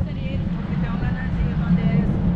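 Steady low rumble of a river tour boat under way, its engine mixed with wind on the microphone, with faint indistinct voices over it.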